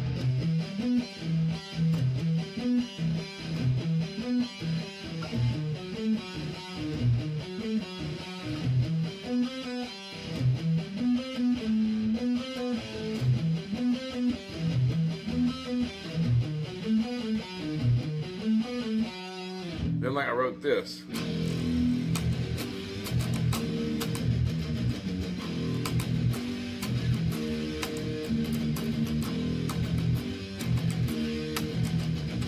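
Electric guitar playing a metal riff of quick single low notes, then after a brief rising slide about twenty seconds in, switching to a denser, fuller-sounding second riff.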